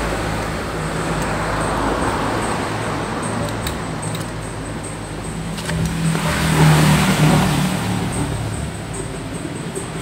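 A motor vehicle's engine running, growing louder about six seconds in and easing off again, with a few light clicks.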